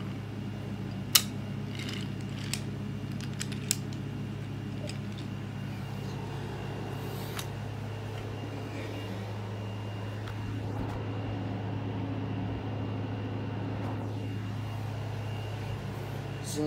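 A steady low mechanical hum, with a sharp click about a second in and a few fainter clicks over the next few seconds.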